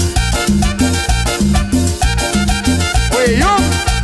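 Peruvian cumbia band playing an instrumental passage: a steady, even beat with strong bass pulses and no singing. About three seconds in, a brief pitched sound slides up and down over the music.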